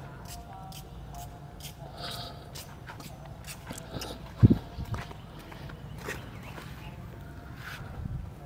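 Open-air background: a steady low rumble with faint distant voices and scattered light clicks. A short, loud low thump comes about four and a half seconds in, with a smaller one just after.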